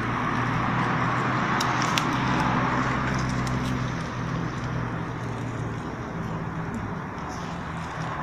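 A motor vehicle engine running nearby as a steady low hum that fades away about six to seven seconds in. A few sharp crackles come from the wood fire under the grill about one and a half to two seconds in.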